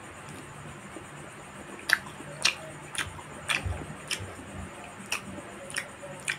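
Close-up eating sounds of a person chewing with the mouth: from about two seconds in, a series of sharp, irregular mouth clicks and smacks, roughly two a second, with a couple of soft thumps in between.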